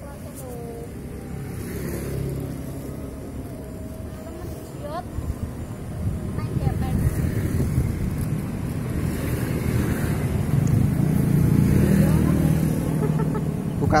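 A motor vehicle passing close by on the road, its rumble growing louder from about six seconds in and loudest shortly before the end.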